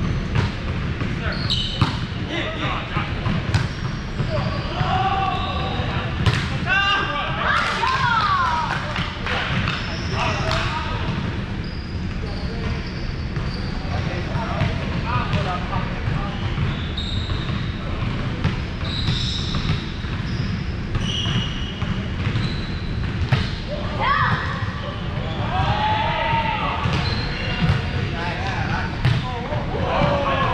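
Indoor volleyball play on a hardwood gym floor: the ball being struck and bouncing, sneakers squeaking, and players calling out, all echoing in a large hall over a steady low rumble.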